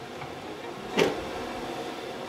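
A single short clunk about a second in as a metal ignition distributor is picked up out of a plastic storage bin, over a steady low hum of room noise.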